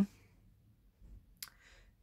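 A quiet pause in a small room with one short, sharp click about one and a half seconds in, followed by a faint hiss.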